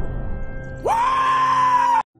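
Film soundtrack music dying down, then a little under a second in a high-pitched yell rises sharply and is held for about a second before cutting off abruptly.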